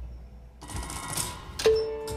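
Robotic marimba of a kinetic instrument playing sparsely. A short clatter of noise comes about a third of the way in, then a single mallet strike on a bar near the end, which rings on as one steady note.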